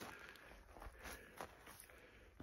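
Near silence, with three faint, short crunches of footsteps on dry dirt.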